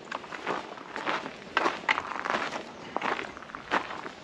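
Footsteps crunching on gravel, irregular and uneven.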